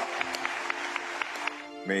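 An audience applauding, a dense patter of clapping, over steady background music. A man's voice comes back in near the end.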